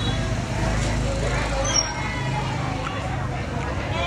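Indistinct voices talking in the background over a steady low rumble, with a brief high falling chirp a little under two seconds in.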